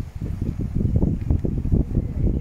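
Wind buffeting the microphone in uneven gusts, a loud low rumble that swells and dips.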